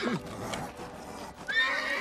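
A horse whinnying from the film soundtrack. A second whinny starts about one and a half seconds in. The horse seems to be scared.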